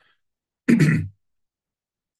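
A man clearing his throat once, a short sharp sound a little past halfway through.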